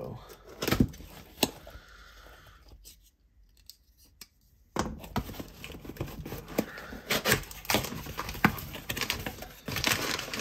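Packaging being cut and torn open by hand, with rustling, crinkling and sharp clicks. The handling stops for a couple of seconds near the middle, then resumes busier.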